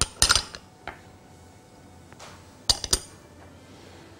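A spoon clinking against small glass bowls as spices are tapped out into a glass mixing bowl. There is a cluster of sharp clinks just after the start, a single tap about a second in, and another cluster near three seconds in.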